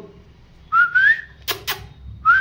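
A man whistling to call his pet rabbits: a short upward-sliding whistle, followed by two sharp clicks.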